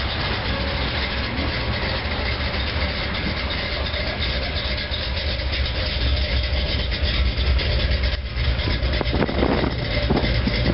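A 1955 Chevrolet Bel Air's engine running with a low exhaust rumble as the car drives slowly past, growing louder from about six seconds in as it comes closest.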